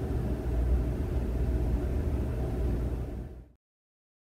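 Steady low rumble of room noise with no speech, which cuts off abruptly to silence about three and a half seconds in.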